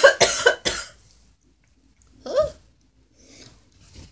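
A woman coughing: a quick run of about four hard coughs right at the start, followed about two seconds later by a short vocal sound.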